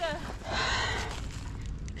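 A winded mountain biker's strained breathing after a crash, with one long, breathy exhale about half a second in, over a low wind rumble on the microphone.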